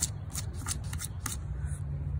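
Scratch-off lottery ticket being scraped with a hand-held scratcher, a quick series of about six short dry scraping strokes in the first second and a half as the coating comes off a bingo number.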